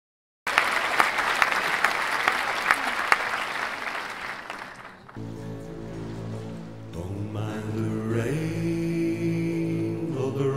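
Applause that starts suddenly and fades out about halfway through, followed by the music's opening: sustained droning chords.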